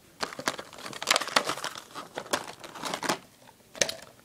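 Packaging crinkling and rustling in quick irregular bursts as the contents of a toy kit box are handled and unpacked.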